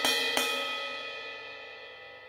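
Sampled cymbal bell hits: the bell is struck at the start and again about half a second in, then rings with a clear metallic tone that slowly fades away.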